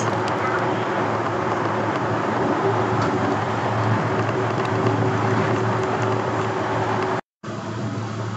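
Yurikamome rubber-tyred automated guideway train running, heard from inside the car: a steady running noise with a low hum. The sound cuts out suddenly for a moment near the end.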